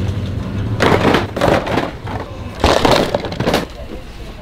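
Cardboard toy and game boxes being pulled off a store shelf and handled into a shopping cart, in three bursts of scraping and knocking.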